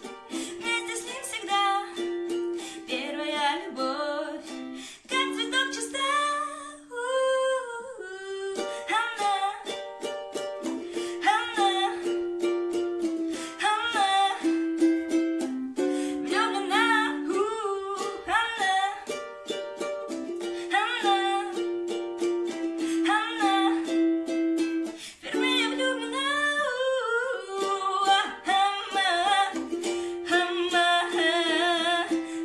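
A girl singing while strumming a ukulele, with quick, regular strum strokes under held sung notes that rise and fall in pitch.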